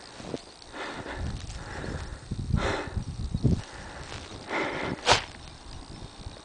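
A person's footsteps in deep snow, uneven steps roughly a second apart, with a sharp knock about five seconds in.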